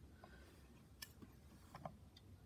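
Near silence, with a faint click about a second in and a couple of soft ticks near the end: hands handling the clear plastic lens cover of a disassembled BioLite PowerLight lantern.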